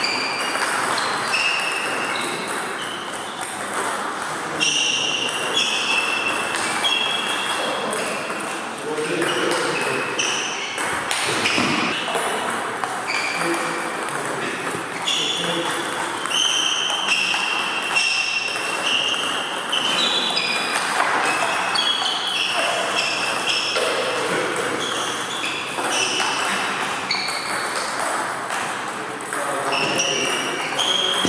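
Table tennis balls striking bats and tables in rallies: many short, high ticks that ring briefly, several a second, from more than one table at once.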